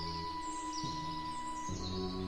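Ambient music of long held chords with birds chirping over it. The low notes change about a quarter second in and again near the end.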